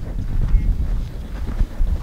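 Wind buffeting the microphone: a gusty low rumble that rises and falls unevenly.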